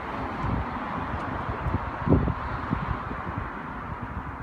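Wind buffeting a handheld phone's microphone outdoors: an irregular, gusty low rumble over a steady background hiss, with one stronger gust about two seconds in.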